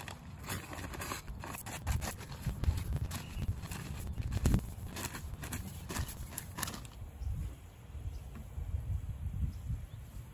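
Irregular rustling, scraping and light knocks of hands-on work in a raised garden bed, such as sprinkling fertilizer and spreading straw, over a low rumble. The knocks are dense for about the first seven seconds and thin out after that.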